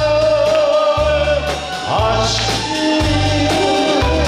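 A man singing a Korean trot song live over band accompaniment: he holds one long note, then starts a new phrase about two seconds in, over a bass line that changes about once a second.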